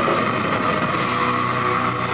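Live hardcore metal band playing loud, heavily distorted electric guitars as a dense wash of noise, with steady chord notes coming through from about a second in.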